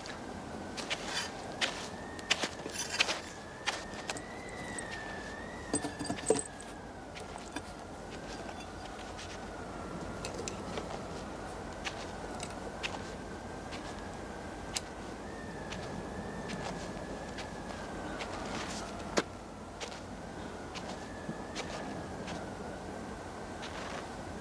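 Metal clinks and knocks of pole-climbing gear as a man climbs a wooden telephone pole, thickest over the first several seconds, with a single louder knock later. Under them runs a thin, slowly wavering high whistle.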